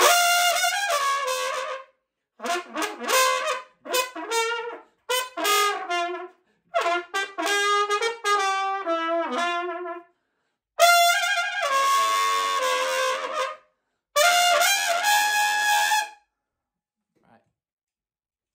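Trumpet played with a throat growl, the uvula rattling in the back of the throat to put a raspy buzz into the notes. Six short phrases of several notes each, with brief gaps between, ending about two seconds before the close.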